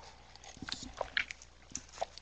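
Faint, scattered small clicks and mouth noises close to the microphone during a pause in speech.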